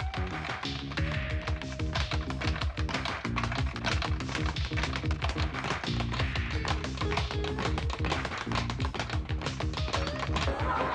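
Speed bag being punched in a fast, steady run of taps, over background music.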